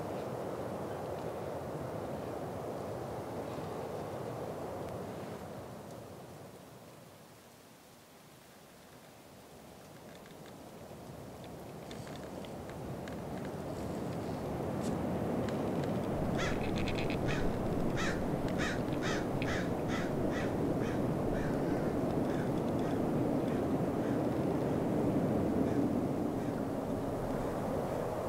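A crow cawing in a rapid run of about a dozen harsh calls, a little over halfway through, over a steady low background rush that fades down and swells back up in the first half.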